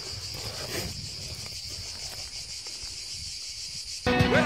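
Steady, high-pitched chorus of insects singing in summer scrubland, with a faint even pulsing.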